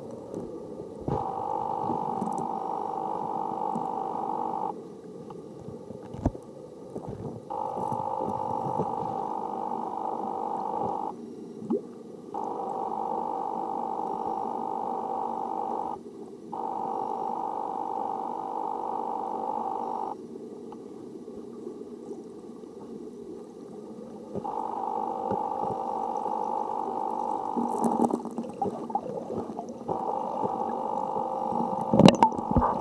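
Muffled underwater noise picked up by a submerged camera, with a steady hum that cuts in and out abruptly five times.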